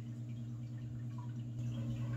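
A steady low hum, even in pitch and level, with no other distinct sound.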